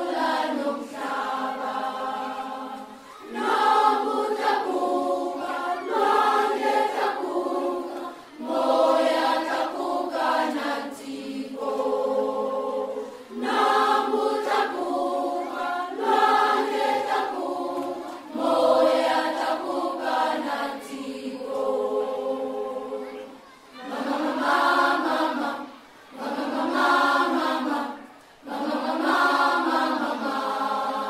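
Vocal music: singing voices in long held phrases of a few seconds each, separated by short breaks.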